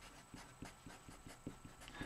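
Marker pen writing on paper: a run of faint, short scratchy strokes, about three or four a second.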